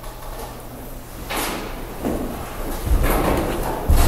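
Rustling and knocking of things being moved or handled, starting about a second in and growing louder, with low thumps in the second half.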